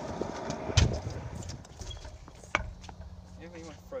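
Stunt scooter on concrete skatepark obstacles: a rough rolling sound, then a sharp hard knock about a second in and a second, lighter knock past the middle.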